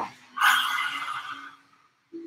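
A woman's forceful open-mouthed 'haaa' exhale with the tongue out, the yoga Lion's Breath. It lasts a little over a second, starting about half a second in and fading out.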